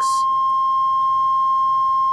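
1985 Buick LeSabre's key-in-ignition warning sounding: one steady, unbroken high-pitched electronic tone, the signal that the key has been left in the ignition.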